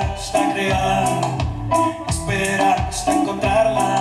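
Live band playing an instrumental passage: guitar with percussion keeping a steady beat.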